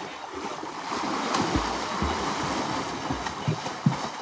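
River water splashing and churning as swimmers wade into the shallows and plunge in, with a sharp splash near the end as one dives forward.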